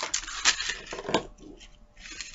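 A few light metallic clinks and rattles of a thin metal necklace chain being handled and untangled.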